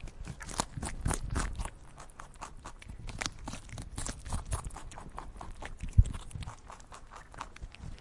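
Rabbits crunching dry feed pellets: a quick, irregular run of small crisp clicks. A single sharp thump comes about six seconds in.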